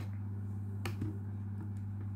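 A few sharp clicks from a Casio fx-570VN PLUS calculator being handled. The loudest click comes a little under a second in, with a second one just after it and fainter ones near the end. A steady low hum runs underneath.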